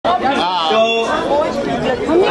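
A man speaking into a microphone, amplified through the hall's sound system, with chatter from the guests underneath.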